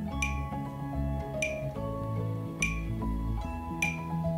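Metronome ticking at 50 beats per minute: four sharp clicks a little over a second apart, over soft background music of sustained notes.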